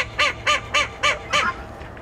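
A duck quacking in a quick, even run of short calls, about four or five a second, stopping about a second and a half in.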